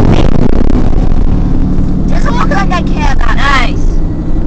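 Loud rumbling road and engine noise inside a moving car, with a steady engine hum underneath. About halfway through, a voice joins in, its words unclear.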